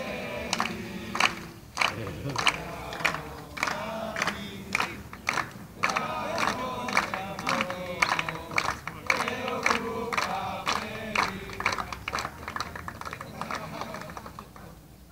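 A group of men singing together, a birthday chant for a teammate, with rhythmic hand claps a little under two a second.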